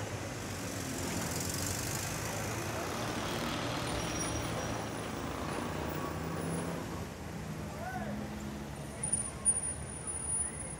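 Street traffic noise with voices in the background. Near the end come a few sharp clops as a horse-drawn cart comes in.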